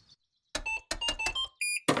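Cartoon sound effect of computer keys being typed: a quick run of clicky taps, followed near the end by a short electronic beep from the computer.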